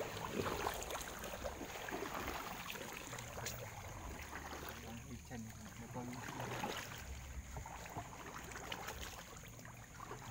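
Water splashing and lapping around an inflatable boat as it moves through floodwater, with many small irregular splashes and low, indistinct voices.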